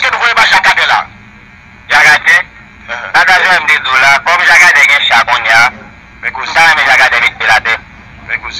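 Speech: a voice talking in phrases, with short pauses between them.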